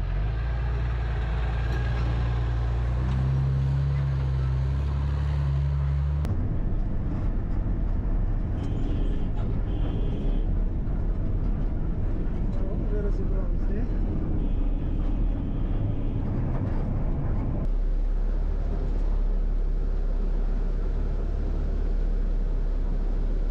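An armoured wheeled vehicle's engine running as it drives, with a steady low engine hum for the first few seconds. After an abrupt change about six seconds in, it becomes the rougher, denser rumble of engine and drivetrain heard inside the moving vehicle's cabin.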